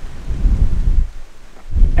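Wind buffeting the microphone: a gusty low rumble that eases briefly just past the middle and picks up again near the end.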